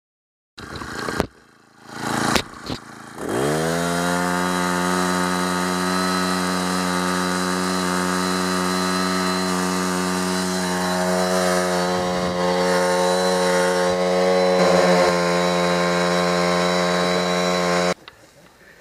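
Small Honda petrol engine of a Simpson portable capstan winch starting after a couple of short pull-cord attempts, revving up about three seconds in, then running at a steady speed.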